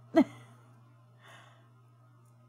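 A woman's brief sigh-like vocal sound, falling in pitch, just after the start, over a steady low hum; a faint rustle follows about a second later.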